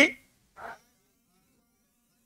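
The tail of a man's spoken word, then a short soft sound about half a second in, then near silence: room tone with a faint steady low hum.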